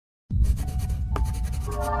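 Logo-intro sound effect of pencil scratching on paper over a low rumble, starting suddenly after a moment of silence; soft sustained synth chords swell in near the end.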